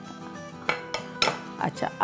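Two light clinks of ceramic kitchen dishes being handled on the counter, about half a second apart, over soft background music.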